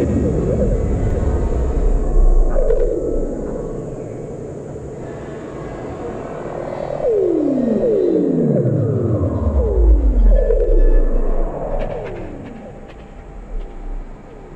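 Experimental glitch/illbient electronic music from a Pure Data patch: randomly chosen samples run through filters, reverb and delay, with their filter cutoff and resonance adjusted live. A string of falling pitch sweeps comes in about halfway through, then a deep low rumble, and the texture thins out near the end.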